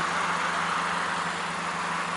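Steady outdoor background noise, an even hiss with a faint low hum underneath and no distinct events.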